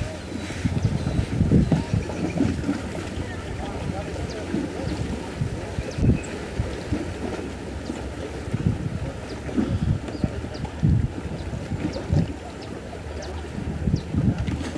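Wind buffeting a camcorder's microphone in uneven low gusts.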